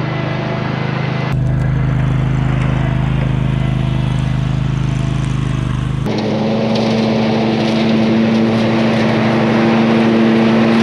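Bad Boy Elite zero-turn mower engine running steadily as the mower drives along, growing louder as it comes closer. Its note shifts abruptly about six seconds in, to a higher pitch.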